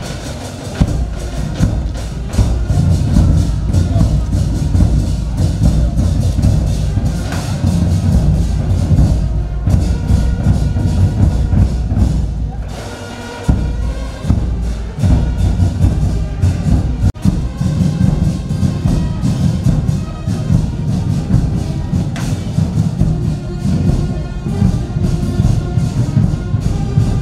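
Procession drumming: a large drum beaten in a steady, dense rhythm with sharp wooden clicks, over accompanying music. The beating breaks off briefly just past the middle.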